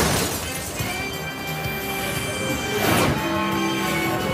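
Cartoon soundtrack: the tail of a loud crash dies away in the first half-second, giving way to music with held notes. A short rushing sweep comes about three seconds in.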